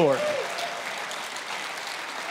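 Congregation applauding: steady clapping that rises just as the preacher's last word dies away.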